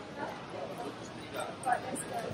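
Indistinct voices and bustle of a crowded, echoing airport terminal, with a brief sharp sound near the end.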